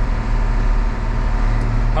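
Large John Deere tractor's diesel engine running steadily under way, a low even drone heard from inside the cab.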